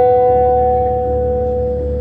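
Live indie rock band, with a single held electric guitar note ringing on and slowly fading over a low bass rumble.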